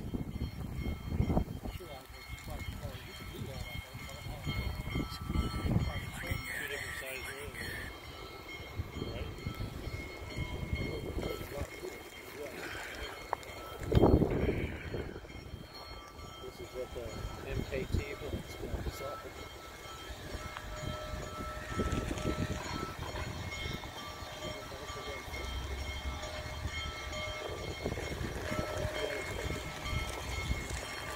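Outdoor background of a waiting crowd talking at a distance, with wind on the microphone and the faint sound of a distant steam locomotive approaching slowly. There is one louder thump about halfway through.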